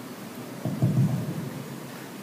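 A brief low rumble, under a second long, starting a little over half a second in, over a steady low background hum.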